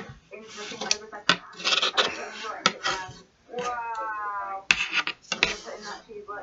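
Metal wire coat hanger being bent and twisted by hand, the wire clicking and scraping in a series of short, sharp knocks.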